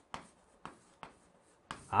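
Chalk writing on a green chalkboard: three short, quiet taps and strokes of the chalk about half a second apart.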